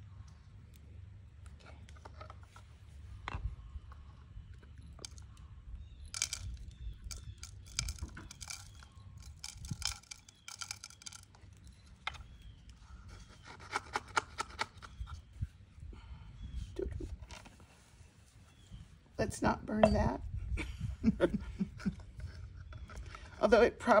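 Coarsely ground coffee poured and tapped from a small paper cup through a paper funnel into a clay jebena: scattered gritty clicks and rustles, busiest in the middle. The grounds are coarser than intended.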